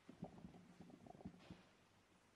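Near silence with a few faint soft knocks and rustles of people moving in the first second and a half, then only room tone.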